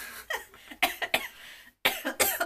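A woman caught in a fit of laughter breaking into coughs: about six short, breathy bursts in quick succession.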